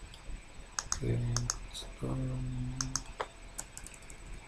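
Light clicks of keys being tapped on a computer keyboard, about ten in small clusters. They come around a man's spoken "okay" and a held hum.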